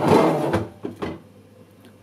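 Plastic Lomo developing tank pulled across a stainless steel sink drainer: a short scraping rush for about half a second, then a couple of light knocks as it settles.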